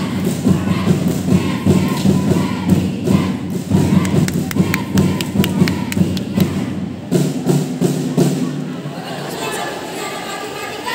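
A jazz-chant routine: a group of performers chanting in unison over a steady thumping beat, with sharp hits scattered through the middle. The beat changes about seven seconds in, and the sound grows quieter near the end.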